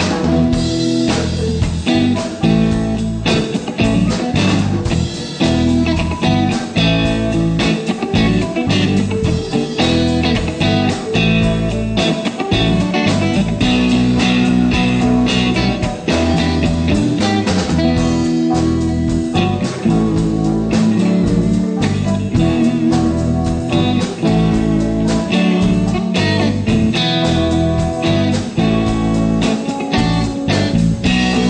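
Live blues-rock band playing an instrumental passage with no singing, led by guitar over a drum kit.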